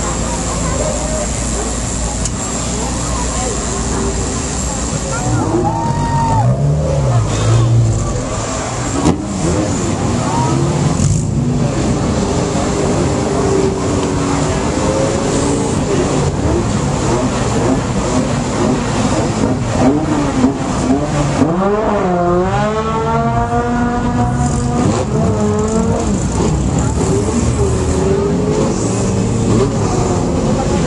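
Off-road race vehicle engines running amid crowd voices; about two-thirds of the way through, one engine revs up and back down.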